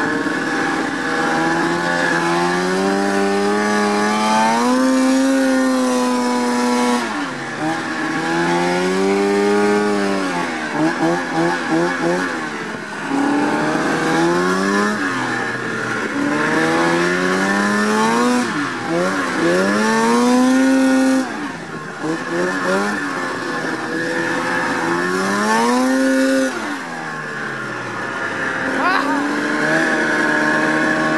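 Arctic Cat ZR 600 snowmobile's two-stroke engine running under way, its pitch rising and falling many times as the throttle is opened and eased off. In two short stretches the pitch wavers rapidly.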